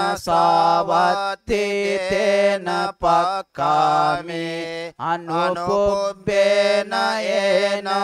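Buddhist monks chanting Pali scripture in a steady, near-level recitation tone, the phrases broken by brief pauses for breath.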